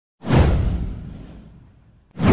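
Whoosh sound effect with a deep low boom, coming in suddenly about a quarter second in, sweeping downward and fading away over about a second and a half.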